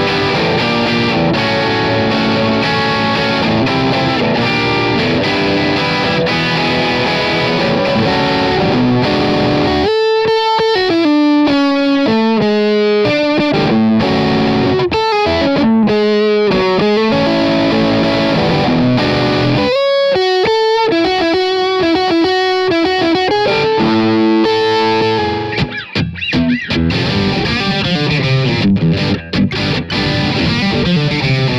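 Electric guitar played through a Vox MV50 mini amp head. It opens with dense, distorted chording, turns to clearer single-note melodic lines about ten seconds in, goes back to full distorted playing, then to another run of single notes, and ends in choppy stabs with short gaps.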